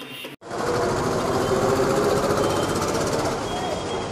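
Busy street noise: a steady din of traffic and many voices that starts abruptly after a short dropout about half a second in.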